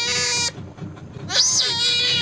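Otter squealing: two high-pitched calls, each opening with a sharp rise and fall in pitch and then held steady. The first ends about half a second in, and the second starts about a second and a half in.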